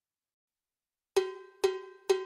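Cowbell sound from a Roland SPD-30 Octapad electronic percussion pad: after a second of silence, two evenly spaced strikes about half a second apart, each ringing briefly.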